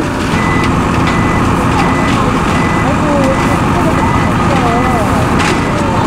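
Steady loud din of a large truck's engine running and fire hoses spraying water. A thin high beep repeats on and off through much of it, with distant voices underneath.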